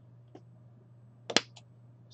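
A rocker power switch on a small desktop 3D printer clicking once, sharply, a little over a second in, after a faint click near the start, over a steady low hum.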